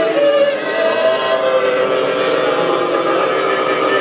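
An unaccompanied group of Bunun and Truku voices singing a prayer in the layered "eight-part harmony" (八部合音) style: many voices holding overlapping long notes at once.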